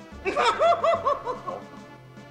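A person laughing: a quick run of about six short laughs, about five a second, trailing off after a second and a half, over background music.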